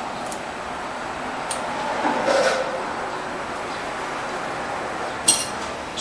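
Gloved hands handling metal spin-on oil filters: faint rubbing and a couple of small ticks, then one sharp metallic clink with a brief ring near the end, over steady shop background noise.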